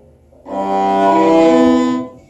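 Cello bowed across two strings at a time, playing a C major chord as double stops (C and G, then D and A strings) and rolling between the string pairs. It starts about half a second in and changes pitch twice.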